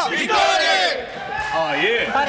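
A group of men shouting and cheering together at the end of a battle-cry chant. After about a second it dies down to a few voices talking.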